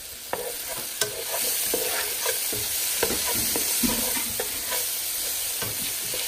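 Sliced onions sizzling in a nonstick frying pan, with a spatula stirring them and repeatedly scraping and tapping against the pan.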